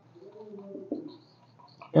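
A pigeon cooing softly, one low call of under a second near the start.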